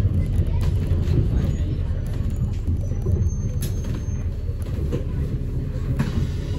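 Steady low rumble of a city bus driving along, heard from inside the passenger saloon: engine and road noise, with a few faint rattles.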